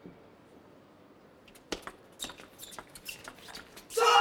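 Table tennis rally: the plastic ball clicking sharply off rubber-faced rackets and the table in quick succession, starting about halfway through after a quiet serve set-up.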